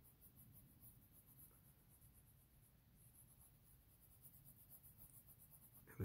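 Faint scratching of a coloured pencil shading on paper, over a low steady room hum.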